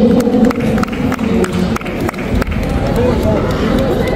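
Crowd chatter and voices echoing in a large sports hall, with a few scattered sharp hand claps.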